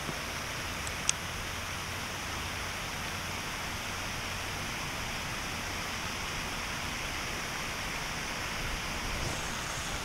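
Steady rushing hiss of water from the pond's spray fountains, with one short sharp click about a second in.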